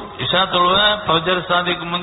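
A man's voice in drawn-out, chant-like recitation, holding long level notes with short breaks between phrases.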